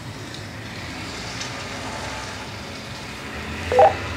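Steady background hiss with a low hum between transmissions on a Motorola XPR 4550 DMR mobile radio. Just before the end, a short, loud pitched burst from the radio's speaker marks the start of the next incoming transmission.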